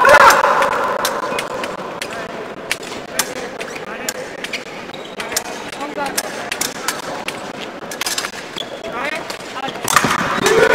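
Scattered sharp taps and clicks from fencers' footwork on the piste and épée blades touching, with faint voices in the hall. A louder sound fades out in the first half second.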